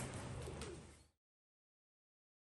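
Faint background hum that fades away about a second in, then dead silence where the sound track is cut.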